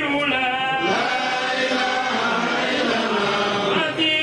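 A group of men's voices chanting together in long, sliding held notes.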